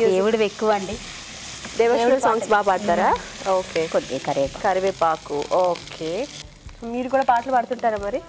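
Food frying in oil in a pan on a gas stove, a steady sizzle while it is stirred with a spatula. The sizzle drops away about six and a half seconds in.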